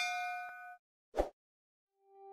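A notification-bell ding sound effect rings out and fades within the first second. A single short click follows about a second later.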